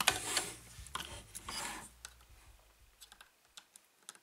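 Hard plastic toy parts being handled, unclipped and fitted together: a quick run of small clicks and rattles with brief rustles in the first two seconds, then fading away.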